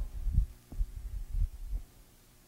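Soft, irregular low thuds, about six in under two seconds, stopping near the end: a person's footsteps and movement picked up by a close microphone while walking.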